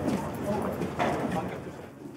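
Footsteps on a hard floor and low background chatter of a group of people walking through a building entrance, fading toward the end.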